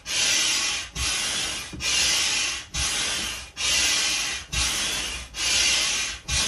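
Hand air pump being worked steadily, about seven strokes, each one a rush of air with a light thump at the turn of the stroke, pushing air into an inflatable dinosaur sprinkler.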